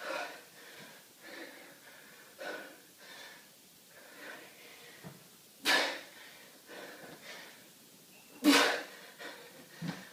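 A man breathing hard in short, forceful exhalations while swinging a dumbbell, about one breath every second or so. Two breaths, one past the middle and one near the end, are much louder than the rest.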